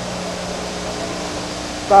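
Steady crowd noise from a packed football stadium, heard through an old television broadcast with a low, steady hum under it.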